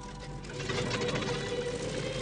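Propeller fighter plane's radial engine running with a rapid clattering, getting louder about half a second in as it blows dust off the ground.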